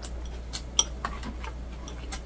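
Metal chopsticks clicking against a ceramic rice bowl while eating: several light, irregular clicks, one with a brief ringing tone.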